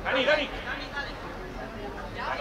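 Voices calling out during a youth football match: one loud shout just after the start, then fainter talk and chatter.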